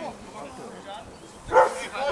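A dog barks once, short and loud, about one and a half seconds in, over faint background voices.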